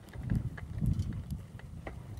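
Irregular low rumbling buffets of wind and handling on the microphone, with scattered light clicks and knocks, from a bicycle being ridden over rough, bumpy ground.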